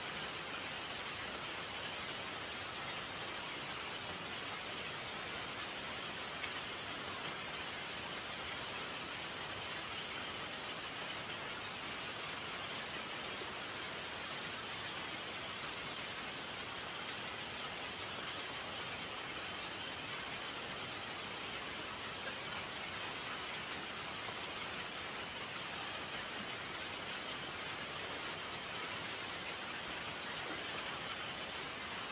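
Steady rain falling, a constant hiss that holds evenly throughout.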